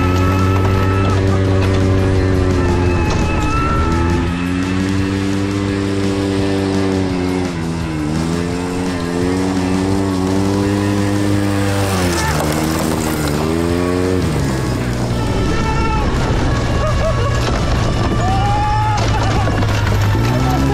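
Background music with long, gently sliding held notes over a steady bass line, with vehicle noise mixed in underneath.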